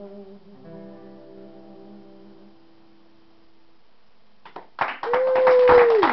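The final strummed chord on an acoustic guitar rings out and slowly fades away. After a short hush, about five seconds in, the audience breaks into applause, with one long whoop held over the clapping that drops off at the end.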